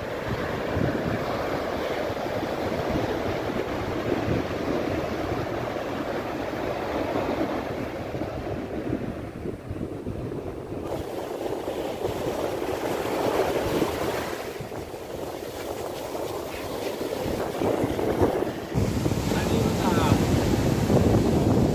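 Sea surf breaking and washing up over sand, rising and falling in surges, with wind on the microphone.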